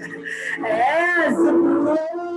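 A woman singing, first swooping up and back down in pitch, then holding one long note.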